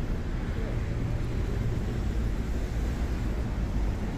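Steady low rumble of road traffic along a city street.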